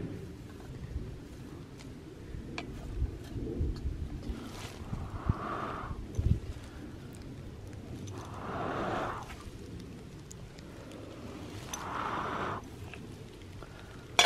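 Three long breaths blown onto smouldering grass tinder and embers in a metal can, each about a second long and a few seconds apart, to bring the embers to flame. Under them are rustling of dry leaves and grass, and a couple of knocks.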